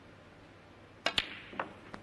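A snooker cue tip strikes the cue ball, followed a moment later by the sharp click of the cue ball hitting the black ball, about a second in. Fainter knocks follow as the black is potted.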